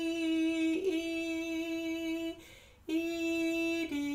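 A woman singing long sustained notes on a 'dee' syllable, sounding the slurred viola notes E and D. The notes are held steadily with a short break about a second in and a pause past the middle, then step down from E to D near the end.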